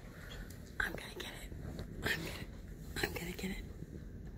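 A large dog snuffling and blowing air through its nose into a leather couch cushion: about four short breathy bursts.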